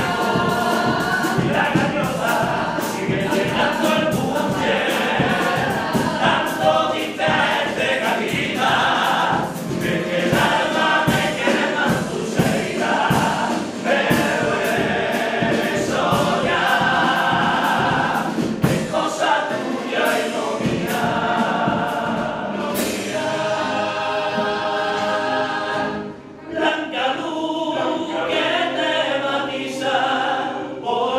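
A Cádiz carnival comparsa's men's chorus singing in harmony to strummed Spanish guitars. About 23 s in the strumming drops away and the voices hold long sustained chords.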